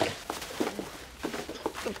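A few people giggling, stifled and in short broken snatches, with low voices under it.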